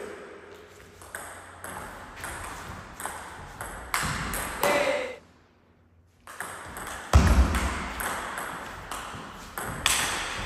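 Table-tennis rally: the celluloid ball clicking off paddles and table about twice a second, with the hits echoing in a large hall. Just past the middle the sound drops to near silence for about a second, and a heavy thud comes about seven seconds in.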